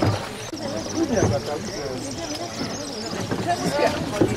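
Indistinct, overlapping voices.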